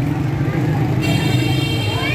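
Street crowd noise over a steady low engine hum, with voices. About a second in, a horn sounds one steady note that holds for about a second and stops.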